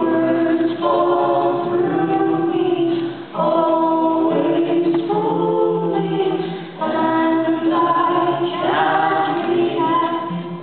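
A woman and a man singing together into microphones over an acoustic guitar, in three long phrases with held notes.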